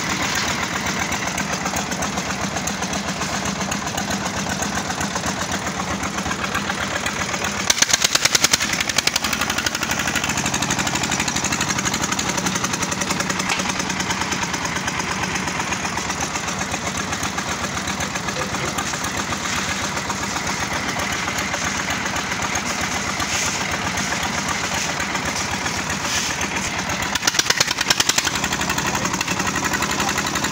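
Stationary single-cylinder diesel engine running steadily under load, belt-driving a concrete mixer and hoist. About 8 s in and again near the end it grows louder and harsher for a second or two.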